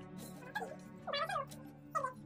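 A domestic cat meowing twice in short, rising-and-falling calls, over soft background music.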